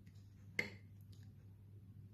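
A single light tap about half a second in, as a mixing brush is let go in a small glass bowl of paste on a wooden table, followed by a couple of fainter ticks, over a faint steady hum.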